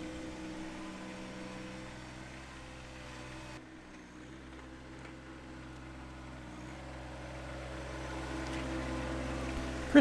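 John Deere 1025R compact tractor's three-cylinder diesel engine running steadily while plowing wet snow with a front blade, getting louder near the end as the tractor comes closer.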